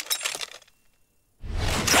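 Cartoon sound effects: metallic jangling, as from hidden needles or files, dies away about half a second in. After a short silence, a sudden loud crash of breaking and tearing comes about one and a half seconds in, as a disguise bursts apart.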